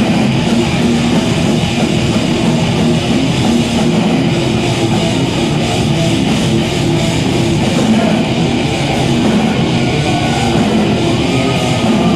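Metal band playing live: heavily distorted electric guitars over a drum kit, a loud, dense, unbroken wall of sound.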